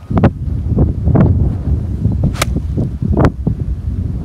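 A golf iron swung on a grass practice tee, striking the ball and turf with one sharp crack a little past halfway as it takes a divot. Wind buffets the microphone underneath.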